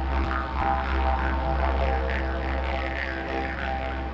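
Plain eucalyptus didgeridoo played with a steady low drone, its overtones sweeping up and down in a rhythmic pattern about twice a second as the mouth shapes the sound. The drone cuts off at the very end.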